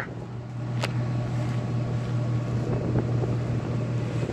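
Steady low engine drone, with a single sharp click just under a second in.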